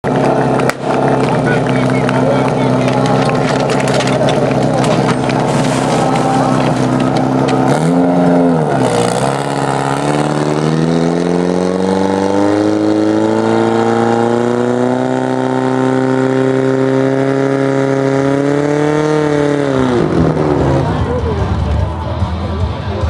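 Portable fire pump's engine running hard under load. Its pitch dips and wobbles about eight seconds in, then climbs steadily for about ten seconds before dropping away near the end. A single sharp crack comes near the start.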